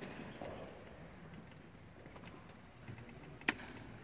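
Quiet concert-hall ambience: faint audience rustling and small knocks, with one sharp click near the end.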